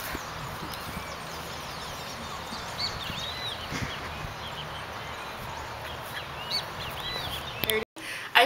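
Small birds chirping again and again in short arched calls over a steady outdoor noise haze; it cuts off abruptly near the end.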